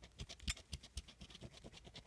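A coin scraping the scratch-off coating from a Texas Lottery Fast 50s scratch ticket: a quick, irregular run of short, faint scrapes, several a second.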